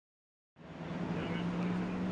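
Dead silence for about half a second, then steady motor-vehicle noise fades in and holds, with a steady low hum beneath it.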